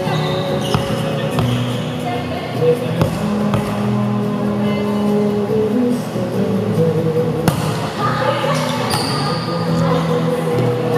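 Music playing in a large gym hall, with a few sharp smacks of a volleyball being hit that echo off the walls.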